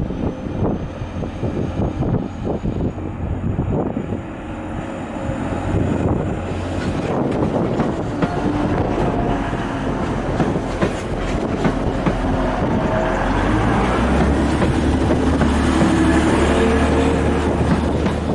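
TransPennine Express Class 185 diesel multiple unit running along the platform close by: wheels clicking over the rail joints and the underfloor diesel engines running, growing louder as the cars pass. A faint high whine sounds over the first six seconds or so.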